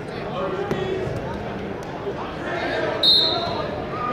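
Gym crowd talking and shouting, with a couple of soft thuds, then one short, sharp referee's whistle blast about three seconds in.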